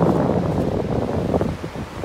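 Surf washing up the beach, with wind rumbling on the microphone; a loud, steady rush with no distinct strokes.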